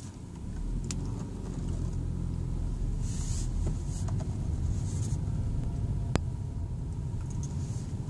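Car engine running with road rumble, heard from inside the cabin, getting louder about half a second in as the car moves forward and then holding steady. A couple of light clicks.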